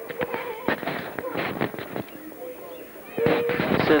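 An irregular run of sharp clicks, thickest in the first half, over faint voices; a man's voice comes in louder near the end.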